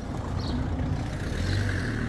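A motor vehicle passing by, its sound building to a peak in the second half.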